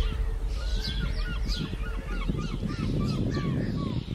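Birds calling in a rapid string of short, curved whistled notes, about three a second, over a steady low rumble.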